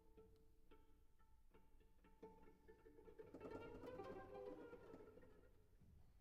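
Solo cello playing very softly: a few short, quiet plucked notes, then a fuller held passage about three seconds in that dies away near the end.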